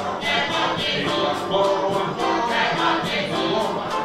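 Afrobeat band playing live, a group of voices singing a chorus over a steady percussion beat.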